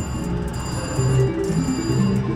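Casino slot machine electronic tune: a run of short, stepping notes under high, steady chiming tones.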